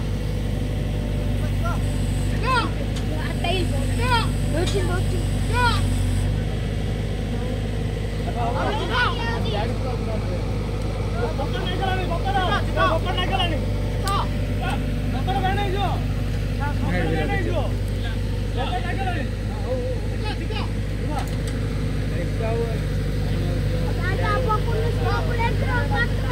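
Diesel engine of a backhoe loader running steadily at low speed, with people's voices calling and talking over it.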